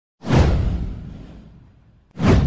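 A whoosh sound effect with a deep low rumble under it, starting suddenly about a quarter second in, sweeping downward in pitch and fading out over about a second and a half.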